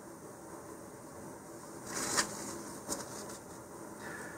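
Faint handling sounds of fingers working a glue-coated balsa wood strip over a cutting mat, with a short rustle about halfway through and a small tick just under a second later.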